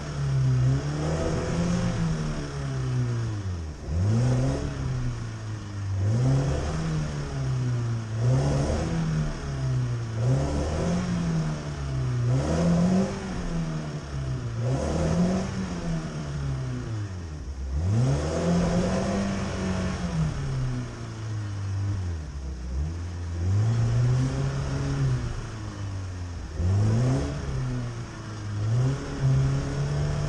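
Chevrolet Niva's engine revving up and falling back over and over, about once every two seconds, while the SUV stays in place in a deep muddy puddle: stuck, spinning its wheels and rocking without getting through.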